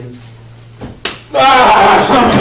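Two sharp slaps close together about a second in, then a person yelling loudly with a wavering pitch.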